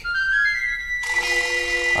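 A short musical sound effect: a quick run of rising notes, then a held chord from about a second in.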